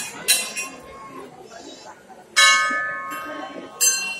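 Hanging temple bells rung by hand: several strikes, the loudest about two and a half seconds in, its ring of several tones fading over more than a second.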